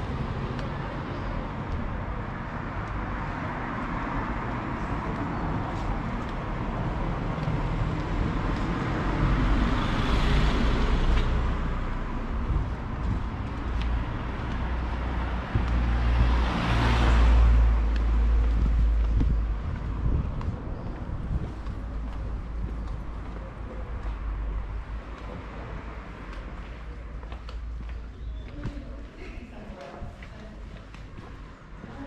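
Town street traffic: cars passing close by over a steady background of street noise, one about ten seconds in and a louder one about seventeen seconds in, each swelling and fading away.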